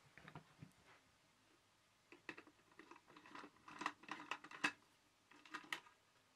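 Hands loosening the screw and working the moulded front cover off a Sangamo Weston time switch: light clicks, knocks and scrapes of the case being handled, a few faint ones at first, then a busy run in the middle and a few more near the end.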